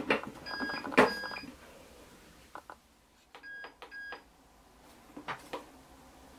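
Tefal ActiFry fryer's lid clunking shut, with a loud knock at the start and another about a second in, then the fryer's control panel beeping as its buttons are pressed: two beeps about half a second in, three short beeps around three and a half seconds in, and soft button clicks near the end.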